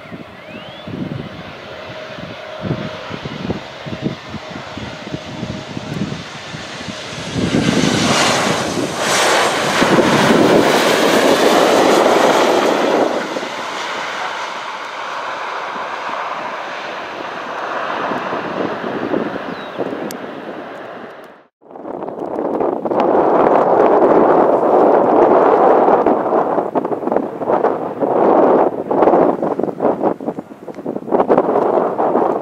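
Twin-engine regional jet airliner landing: turbofan noise grows as it comes in, is loudest as it touches down and rolls out along the runway, then eases off. About two-thirds of the way through the sound cuts off abruptly and is followed by wind buffeting the microphone.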